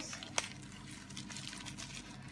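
Quiet room background with one short, sharp click about half a second in and a few fainter ticks.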